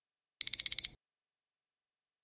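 Quiz-timer alarm sound effect marking that the countdown has run out. It is a brief, high-pitched electronic ringing of about five rapid pulses in half a second, starting about half a second in.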